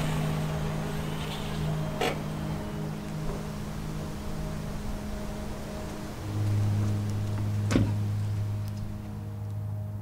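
Volkswagen Polo hatchback pulling in and parking. A steady low hum runs throughout and deepens and grows louder about six seconds in, and a sharp thud of the car door shutting comes nearly eight seconds in.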